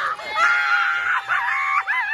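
Women screaming and shrieking in excitement as a wooden Jenga tower collapses, the last blocks clattering onto the table at the very start. Two long, high-pitched screams, the second shorter and near the end.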